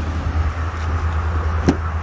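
Chevrolet Tahoe's V8 engine idling with a steady low rumble, and a sharp click near the end as a rear door latch is pulled open.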